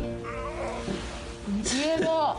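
A woman's drawn-out, whining moan near the end, rising then falling in pitch, as she grumbles at being woken from sleep; background music plays underneath.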